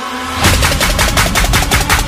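Background music track: about half a second in, a rapid, even run of sharp machine-gun-like hits starts over heavy bass, about eight a second.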